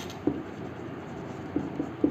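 Marker pen writing a word on a whiteboard: quiet strokes of the felt tip on the board.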